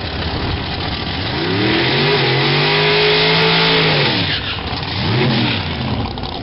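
Drag car's engine revving hard during a burnout: it climbs about a second in, holds high for a couple of seconds with the hiss of spinning tyres, drops back, then gives one shorter rev near the end.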